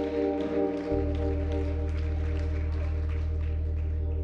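Church organ holding a sustained chord over a deep bass note, with the bass swelling in louder about a second in.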